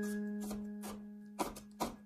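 A Chinese cleaver chopping red pepper on a wooden cutting board: a few sharp knocks of the blade on the board in the second half. Under them, a single held guitar note of background music fades away.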